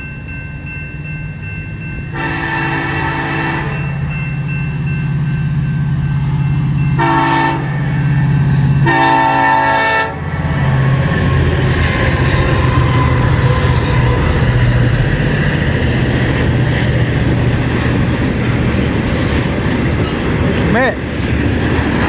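Canadian National freight train's two diesel locomotives approaching with their engines droning, the air horn sounding three blasts: one of about a second and a half, a short one, then a longer one. From about ten seconds in, the locomotives and freight cars roll past, with a dense rumble of wheels on rail.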